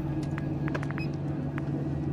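CPAP machine running with a steady low hum as it pushes air through the hose into the nasal mask, with a short run of faint rapid ticks about a second in.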